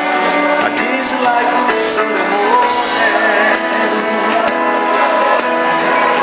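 Digital piano and keyboards playing a slow soul ballad: held chords under a lead melody that slides and bends in pitch.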